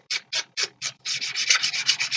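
A round ink dauber rubbed in quick scratchy strokes against the edge of a paper photo card, inking its edges. The strokes come about four a second at first, then faster and almost continuous in the second half.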